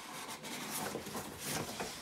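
Cardboard box and packaging being handled, rubbing and scraping as the contents are pulled out, in a run of short scuffs and rustles.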